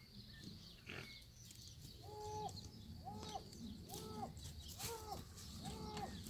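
An animal calling over and over, about once a second, starting about two seconds in; each call is a short note that rises, holds and falls. It is faint, over quiet outdoor background noise.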